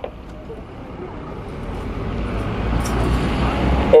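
Road traffic: a motor vehicle approaching on the street, its engine rumble and tyre noise growing steadily louder.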